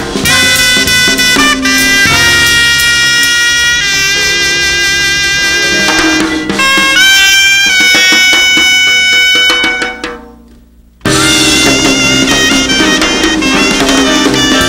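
Jazz soprano saxophone playing long held, sliding notes over a drum kit. About ten seconds in the sound fades into a brief gap, then sax and drums come back suddenly at full level.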